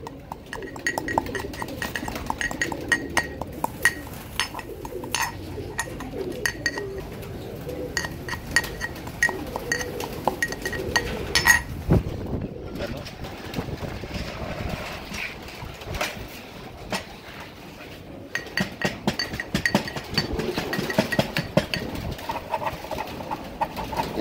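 Steel pestle striking and grinding in a small steel mortar, a few ringing clinks a second, as tablets are crushed to a fine powder. A heavier knock comes about halfway through, then the clinking thins out and picks up again near the end.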